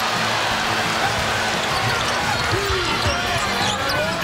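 Arena crowd noise during a college basketball game, with a basketball being dribbled on the hardwood court.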